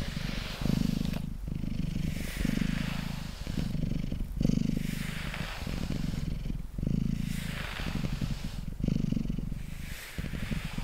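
Domestic cat purring close to the microphone, the purr pulsing in a steady rhythm of about one breath a second. A grooming brush strokes through its fur at the same time with a soft scratching hiss.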